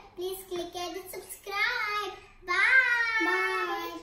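Young girls singing a short sing-song phrase in three parts, the last note held longest and loudest.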